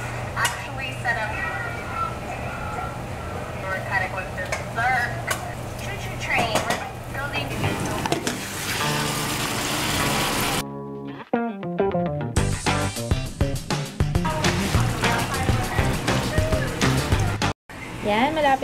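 Chicken sizzling and being stirred in a pot for tinola over a steady low hum, the sizzle growing louder just before ten seconds in. About ten and a half seconds in the sound cuts suddenly to background music with a steady beat.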